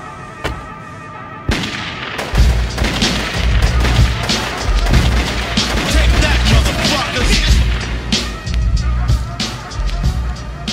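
A gunfight sound effect in a hip-hop track: after a quieter first second and a half, a sudden burst of rapid gunfire sets in and goes on, with deep booms under the shots.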